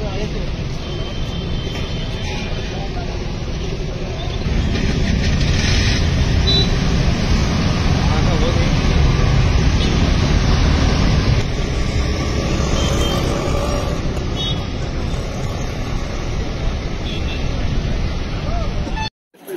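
Busy road-junction street noise: motor traffic and scooters passing, with indistinct voices in the background. It grows louder for several seconds in the middle as two-wheelers go by close.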